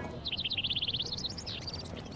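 A songbird singing a quick trill of high chirps, rising in pitch near the end, over faint street background noise.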